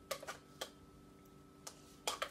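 A metal spoon clicking against a plastic yogurt cup a few times as Greek yogurt is scooped out: faint, separate clicks, a few near the start and one near the end.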